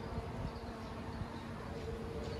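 A flying insect buzzing with a steady low hum, over a low rumble.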